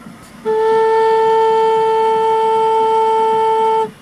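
Native American flute playing its bottom note, an A held steady for about three seconds, starting about half a second in. The note is now in tune at A = 444 Hz (the 528 Hz C tuning), where it had been a little flat.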